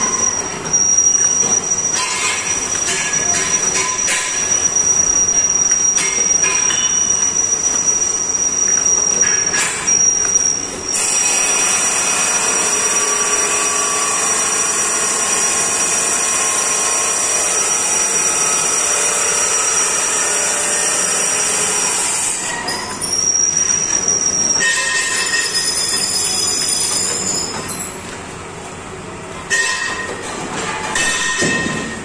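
Automatic paper bowl (dona) making machine running: a loud, steady mechanical din with a thin high-pitched whine over most of it, easing off briefly near the end.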